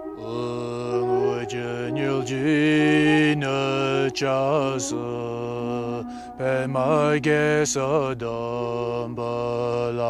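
Deep male voice chanting a Tibetan Buddhist mantra in long held notes. The upper pitches waver and slide over a steady low tone, with short breaks between phrases.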